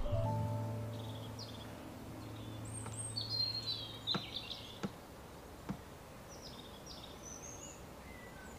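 A held low note of soundtrack music fades away over the first few seconds while small birds chirp in short, high, rising and falling calls, with a few faint ticks in between.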